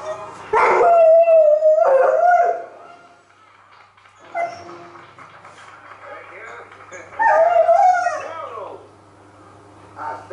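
A dog left alone in the flat howling: a long wavering howl about half a second in, a short whine around four seconds, and a second long howl falling in pitch about seven seconds in.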